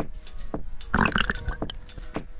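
Background music with a steady beat of sharp strikes about every half second over held tones. About a second in there is a brief, louder rush of noise.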